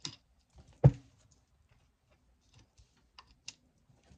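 Cards and small objects being handled on a wooden desk. There is one sharp knock about a second in and a few faint clicks near the end.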